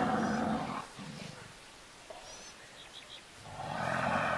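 A lion growling in the first second, then a quieter stretch, with a steady rushing noise swelling near the end.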